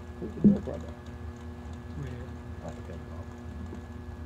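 Low, steady hum under faint voices, with a short louder burst of voice about half a second in.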